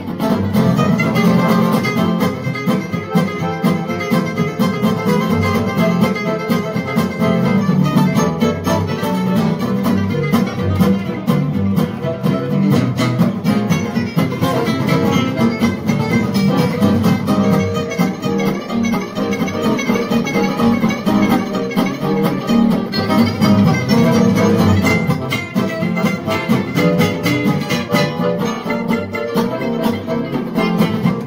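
Gypsy jazz band playing live: acoustic guitars and violin over accordion, double bass and drums, running without a break.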